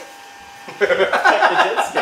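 Men laughing heartily together, breaking out a little under a second in after a brief lull.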